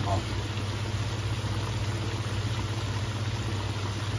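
Pieces of Lipu taro deep-frying in hot peanut oil: a steady sizzle and bubbling, with a steady low hum underneath.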